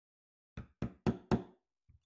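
A hammer striking a chisel into a wooden log: four quick blows about a quarter second apart, growing louder, then a faint tap near the end.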